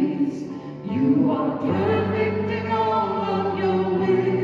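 Live worship song in a chapel: singing voices led over a microphone, over held accompaniment chords. There is a short dip about a second in, and then the next phrase comes in.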